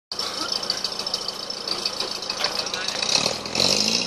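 Off-road vehicle's engine running in the mud, revving up near the end, its pitch rising and then holding higher.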